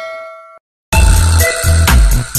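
A bright bell-like chime sound effect rings and fades away, then after a brief silence electronic music with a heavy bass beat starts loudly about a second in.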